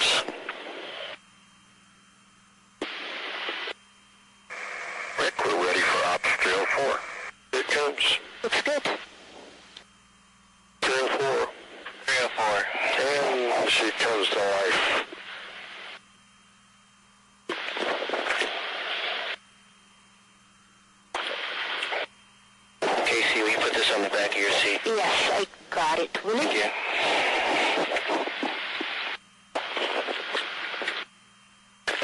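Unclear voices over a radio communication loop. Short transmissions with hiss cut in and out abruptly, about a dozen of them, with quiet hum between.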